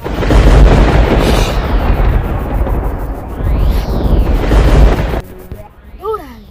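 Loud rumbling thunder sound effect, starting abruptly and cutting off suddenly about five seconds in.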